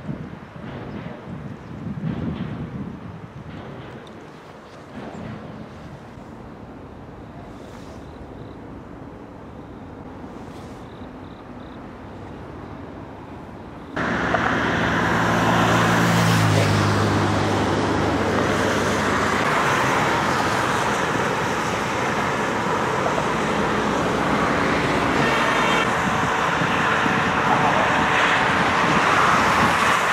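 Road traffic on a multi-lane road: faint and mixed with light wind at first, then, after a sudden cut about halfway through, loud and close as cars pass. Just after the cut a passing vehicle's engine hum stands out for a few seconds.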